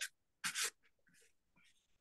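A pastel stick stroked across paper: one short scratchy stroke about half a second in, then faint light rubbing.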